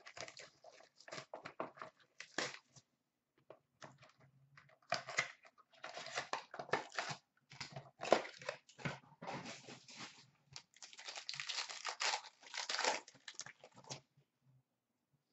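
Foil trading-card pack wrappers being torn open and crumpled, in irregular crinkling bursts with short pauses between.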